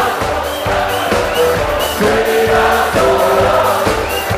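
Live band playing with drums and singing, the voices holding long notes over a steady beat.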